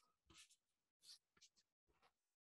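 Near silence, with a few faint, short swishes of a brush across watercolour paper as a freshly painted edge is softened.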